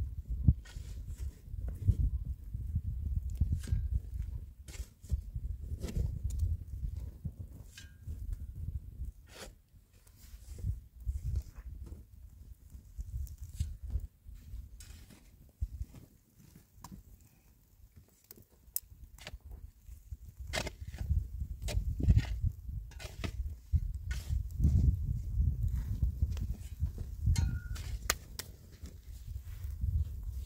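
Scattered knocks and scrapes of a mattock digging into dry, stony earth, against a low gusting rumble.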